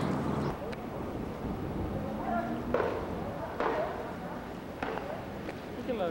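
Voices of people talking, broken up and not close, with a few sharp knocks or clicks scattered among them.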